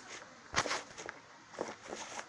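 Handling noise from a phone being moved and repositioned: a sharp knock about half a second in, then a few lighter knocks and rubs near the end.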